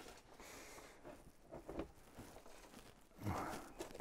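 Faint rustling and scraping as hands sweep loose compost across a plastic potting tray and press it into plastic root trainer cells, with small ticks of compost grains. A brief louder rustle comes about three seconds in.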